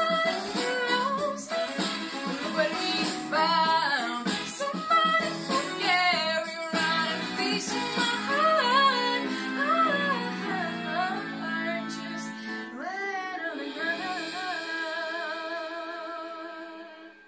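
A teenage girl singing the closing phrases of a pop song over an instrumental accompaniment, ending on one long held note.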